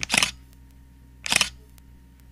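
Camera shutter click sound effect, twice, a little over a second apart.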